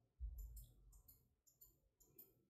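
Near silence with faint ticks and rustles of a crochet hook working yarn into double crochet stitches, and a soft low thump just after the start from the hands handling the work.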